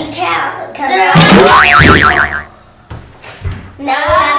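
A cartoon-style boing sound effect, about a second long, with a quickly wobbling pitch. It sounds over children's voices.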